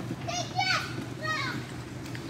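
Children's voices, three short high-pitched calls within about a second and a half, over a steady low hum.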